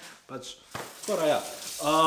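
Water running from a kitchen tap into a metal sink, a steady hiss.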